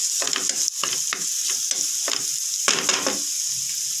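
Chopped onion and green chillies sizzling in hot oil in a frying pan, with a steady high hiss. A wooden spatula scrapes and stirs across the pan in repeated strokes, a few a second.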